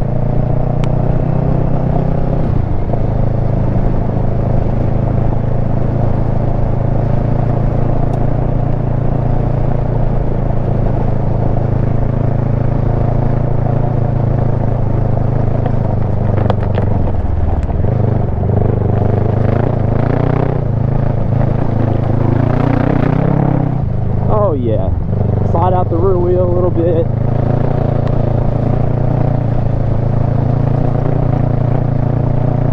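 Kawasaki Versys 650's parallel-twin engine running steadily at cruising speed while riding over loose gravel, with the engine note dipping briefly a few times.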